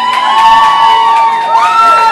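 Audience cheering, with several long high-pitched whoops and screams overlapping.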